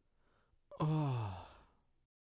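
A single voiced sigh, starting a little under a second in and falling in pitch as it fades over about half a second.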